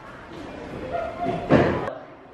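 A single slam or thump about one and a half seconds in, stopping abruptly, with faint voices before it.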